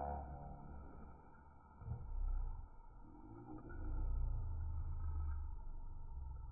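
Rottweiler growling low while gripping and tugging a leather bite pillow, swelling about two seconds in and again for a longer stretch near the middle.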